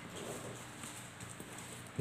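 Ballpoint pen quickly drawing circles on a sheet of paper on a table, faint scratching strokes.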